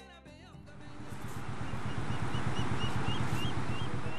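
Background music ends within the first second and gives way to outdoor field sound. A steady low rumble swells up, with a short high chirp repeating about three times a second over it.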